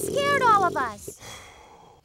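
A cartoon character's voice making a drawn-out, sighing vocal sound with falling pitch in the first second, then fading away.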